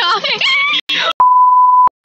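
A high-pitched voice talking, cut off short, then one steady edit bleep, a flat single-pitch beep a little under a second long, the kind laid over a word to censor it.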